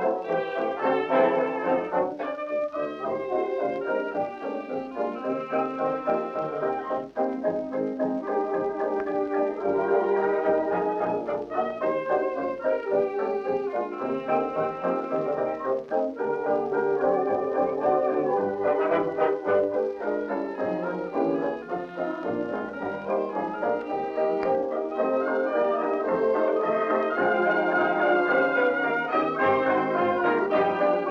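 Instrumental passage of a 1929 dance band medley with brass to the fore, played from an electrically recorded 8-inch 78 rpm shellac record.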